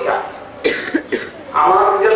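A man coughing into a microphone: one sharp cough about halfway through, then two shorter coughs, before his talk resumes.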